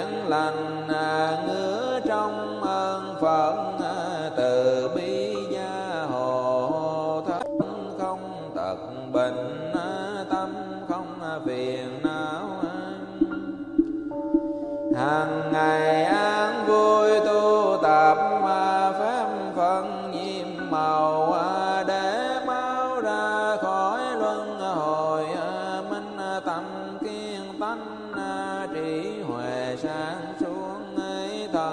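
Vietnamese Buddhist sutra chanting: a melodic chanting voice gliding between pitches over a steady low drone, with a brief lull around the middle before the chant resumes in full.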